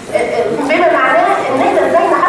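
Speech only: a woman lecturing in a large hall.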